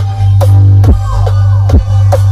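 Electronic dance music played at high volume through a large outdoor sound system of stacked speaker cabinets with triple-magnet 21-inch and 18-inch Betavo drivers. It has a heavy, unbroken bass and falling sweeps about twice a second.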